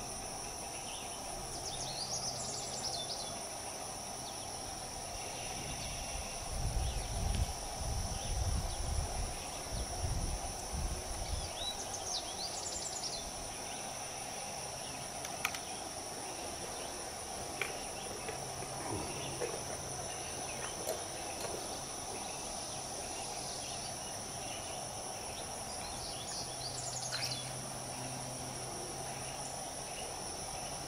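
Steady drone of insects in two unbroken high pitches, with a few short bird chirps. A low rumbling noise lasts several seconds near the middle, and there are a few faint clicks.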